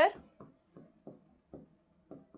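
Stylus writing on an interactive whiteboard screen: a handful of faint, short taps and strokes as a word is written.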